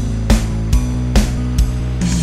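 Indonesian pop song playing, with a steady drum beat of about two strokes a second over sustained low notes.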